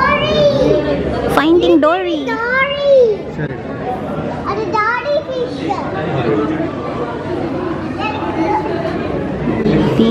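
A young child's high-pitched excited calls and squeals, their pitch swinging up and down, several in the first three seconds and another about five seconds in, over a murmur of voices in a large hall.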